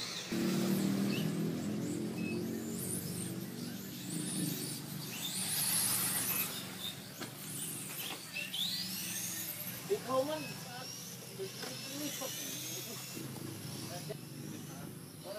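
Radio-controlled model car running on a track: its motor whines in high rising and falling sweeps, over a louder buzzing hum in the first few seconds.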